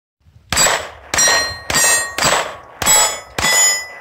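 Six handgun shots in a steady string about half a second apart, each one ringing a steel target as the bullet hits.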